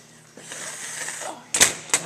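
Two sharp metal knocks about a second and a half in, a moment apart, as a rebuilt tractor carburetor is set down on a steel workbench, after some quieter handling noise.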